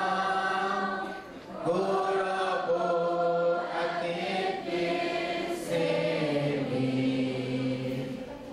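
A man's voice singing slowly through a church microphone and loudspeakers, holding long notes that step from one pitch to another, with a short break for breath about a second and a half in.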